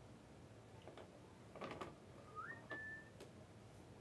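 Near silence, broken a little past two seconds in by a brief faint whistle-like tone that steps up in pitch and holds for about half a second.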